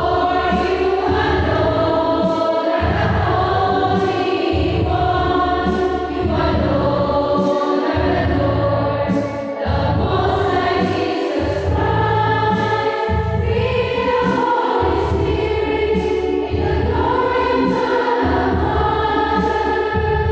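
A choir singing a church hymn in long held notes, in phrases a few seconds long with brief pauses between them.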